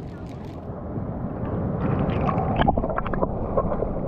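Seawater sloshing and gurgling against the microphone of a camera dipped under the surface. It grows louder and muffled about a second in.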